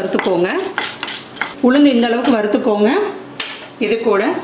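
Wooden spoon stirring and scraping dal across an iron kadai, each stroke giving a wavering, squeaky scrape over a light sizzle of the lentils roasting in oil. The dal is being roasted to light brown.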